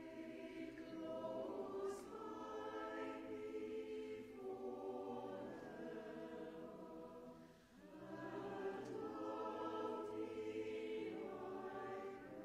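Church choir singing a carol in parts. There is a brief break between phrases about seven and a half seconds in.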